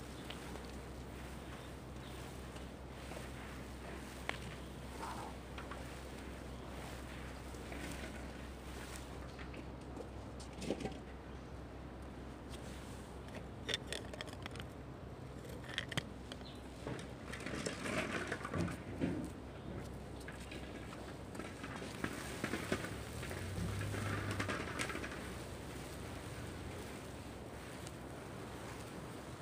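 Quayside ambience: a low steady hum with scattered light clicks, knocks and rustles, the handling noises busier and louder in the second half.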